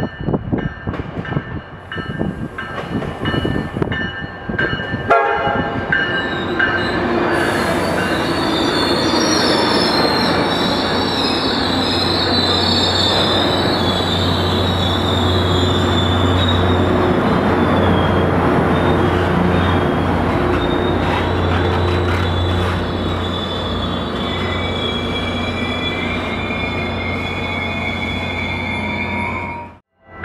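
Tri-Rail push-pull commuter train with its BL36PH diesel locomotive rolling into a station. For the first few seconds there are sharp wheel clicks over rail joints. After a cut, the locomotive runs close by with a steady low engine hum under a loud high-pitched metal squeal, typical of a train slowing to stop.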